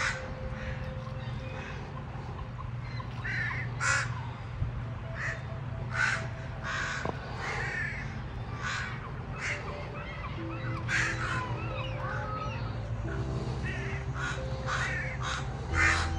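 Crows cawing over and over, a harsh call about every second, some in quick pairs, over soft background music that grows fuller near the end.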